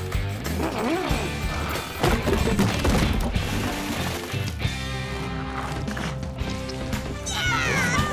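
Background music score with held chords, joined by a run of knocks and crashes from about two to three and a half seconds in.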